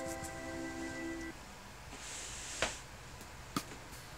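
Background music holds a chord that stops about a third of the way in. Then comes a brief soft hiss and two light clicks: a plastic measuring spoon and a spice shaker being handled on the counter.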